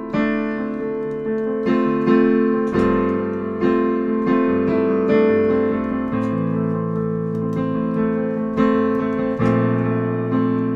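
Digital piano playing the solo introduction of a slow song: sustained chords struck in a steady pulse, with the bass note changing every few seconds.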